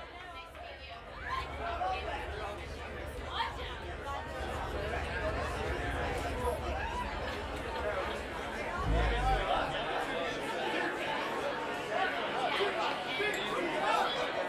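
Crowd chatter: many overlapping voices in a large room, over a steady low hum, with one brief low thump about nine seconds in.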